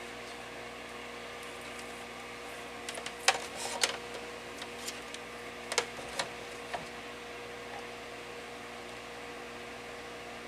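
Multimeter test probes tapping and scraping against a space heater element's metal crimp terminals, a few short clicks between about three and seven seconds in, over a steady electrical hum.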